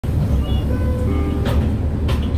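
Steady low engine rumble inside a moving city bus, with scattered short high squeaks and a sharp click about one and a half seconds in.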